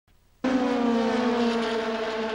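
Race car engine running at high revs as the car goes by, its note sliding slowly down in pitch; it cuts in abruptly about half a second in.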